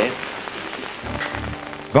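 Crackling hiss of an old film soundtrack over a low hum, with faint steady tones coming in about halfway through.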